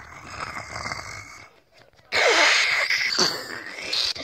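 A person's breathy, noisy vocal sounds: a softer stretch first, then a louder one from about halfway through, with the pitch sliding down.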